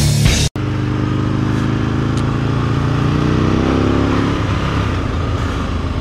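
A brief burst of rock music, cut off about half a second in. Then a sport motorcycle's engine runs on the road with wind and road noise, its pitch climbing slowly through the middle as the bike picks up speed.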